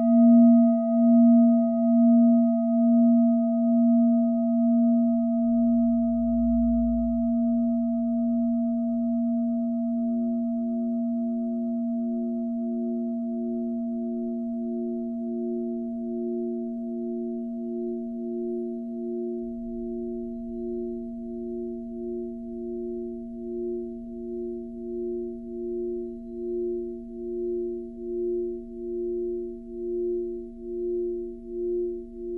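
Steady pure ringing tones that start suddenly and fade slowly with a slow wobble, not song music. About ten seconds in, a second, slightly higher tone joins, pulsing steadily.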